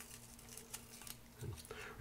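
Faint crinkling and small clicks of a whisky bottle's foil capsule being peeled off the neck by hand, over a steady low hum.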